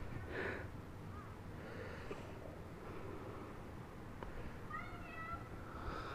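Faint, distant children's voices calling out as they play, a few high-pitched cries with rising and falling pitch, the clearest near the end.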